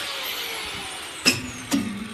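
A handheld grinder's motor winding down with a faint, slowly falling whine, then two sharp metallic knocks about half a second apart, the first the louder, each with a short ring.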